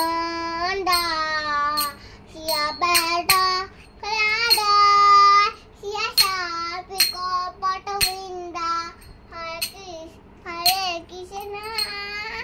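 A young girl singing a devotional kirtan chant in a high child's voice, with some long held notes. Small brass hand cymbals (karatalas) are struck together at irregular intervals, with a short metallic ring after some strikes.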